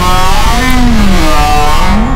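A very loud, distorted sound effect cut in abruptly. It holds one pitch, then swoops up and back down twice, with a heavy low rumble under it.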